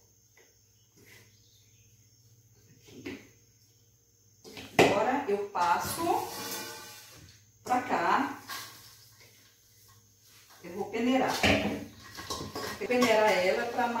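Soft rustling of hands working damp cassava starch in a bowl, then about five seconds in a woman's voice talking, with steel bowls knocking and clinking as the starch is tipped onto a sieve.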